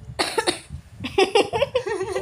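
A person coughs, a short breathy burst about a quarter second in, then lets out stifled, voiced laughter through a hand held over the mouth.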